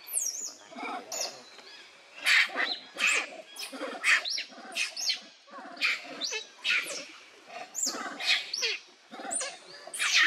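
Macaques screaming: a run of loud, shrill calls that sweep up and down in pitch, several a second, coming in bursts.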